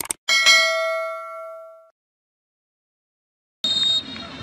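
Mouse-click sound effect followed by a bright bell ding that rings out and fades over about a second and a half, from a subscribe-button animation. After a silent gap, the football match broadcast's crowd sound cuts in abruptly near the end.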